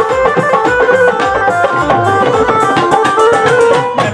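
Live Punjabi folk band playing an instrumental interlude: a keyboard melody over a steady hand-drum rhythm, loud and continuous.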